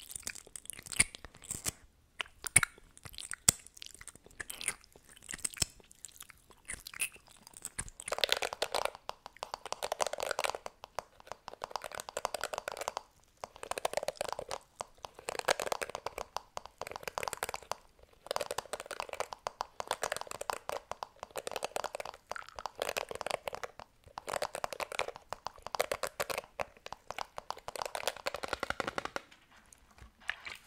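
Sharp clicks and taps from lip gloss tubes handled at the microphone. From about eight seconds in, these give way to repeated scratchy brushing strokes, each a second or two long, from a paddle hairbrush's bristles and a foam piece rubbed close to the microphone.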